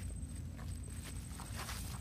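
Footsteps and rustling on dry leaves and undergrowth, a few scattered crunches and rustles over a steady low rumble.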